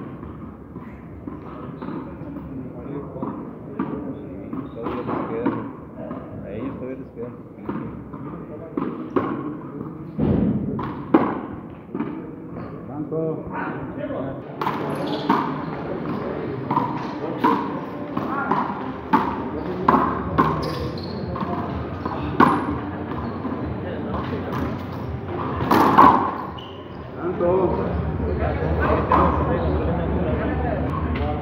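A frontón ball striking the front wall and floor of the court in a rally: a string of sharp knocks at uneven spacing, with people talking in the background.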